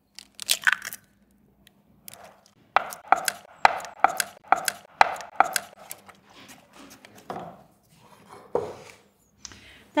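Wooden spoon beating sugar and raw eggs into thick cooked tapioca in a copper saucepan. The spoon knocks and scrapes against the pan, with a quick run of about three knocks a second in the middle and a few scattered knocks around it.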